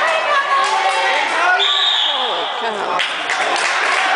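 Spectators shouting and calling out in a gym, and a referee's whistle blown once, a steady shrill note about a second and a half long, near the middle.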